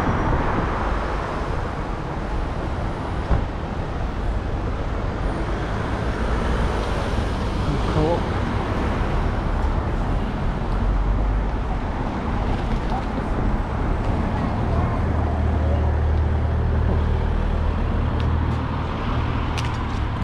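Street traffic heard from a moving bicycle, with a steady low rumble at the microphone. A low engine hum joins about 15 seconds in.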